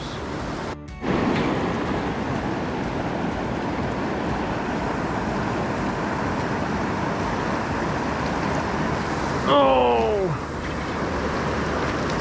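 Steady rush of a river's rapids and fast current, an even wash of water noise. About two thirds of the way in, a man gives a short exclamation that falls in pitch.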